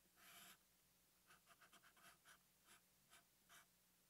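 Very faint strokes of a felt-tip Sharpie marker on paper while drawing lines of a circuit diagram: a slightly longer stroke near the start, then a run of short strokes.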